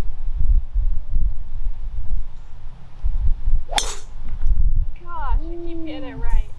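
Golf driver striking a ball off the tee: one sharp crack of club on ball about four seconds in, over a low steady rumble. A voice calls out a second after the hit.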